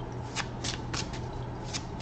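Tarot cards being handled and shuffled by hand: a handful of short, crisp flicks of card against card.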